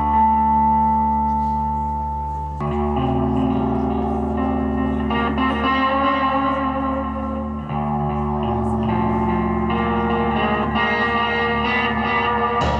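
Telecaster-style electric guitar played through echo effects: ringing chords held and changing every two to three seconds over a steady low note.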